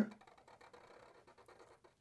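Faint felt-tip marker strokes scratching on paper, barely above room tone.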